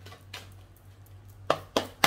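A deck of tarot cards being shuffled by hand: faint card handling, then two sharp clacks of the cards near the end.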